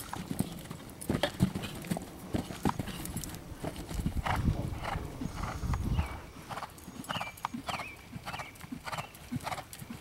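Hoofbeats of a grey Holsteiner gelding cantering on sand arena footing, a steady run of soft thuds, with a low rumble for a couple of seconds near the middle.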